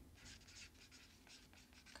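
Faint felt-tip marker strokes on a paper plate, a run of short scratches as words are written out.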